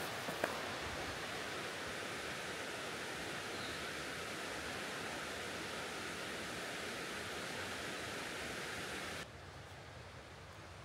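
Steady rushing of river rapids on the Cuyahoga River, with a faint click just after the start. The rush drops suddenly to a quieter level about nine seconds in.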